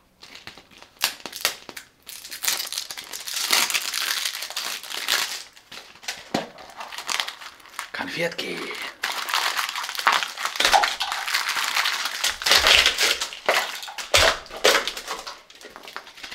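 Cellophane and plastic candy wrappers crinkling and rustling as wrapped sweets are handled inside an opened hollow plastic surprise egg, with sharp clicks and a few low knocks of the plastic egg halves.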